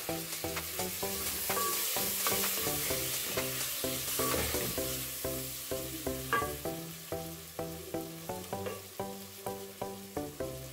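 Tomatoes sizzling in hot oil with fried onions in an aluminium pot, stirred with a wooden spoon. The sizzling is louder in the first half, with a single knock about six seconds in. Background music with a steady plucked beat runs underneath.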